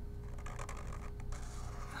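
Black felt-tip marker drawing on sketchbook paper: faint scratchy strokes of the tip across the page, over a steady faint hum.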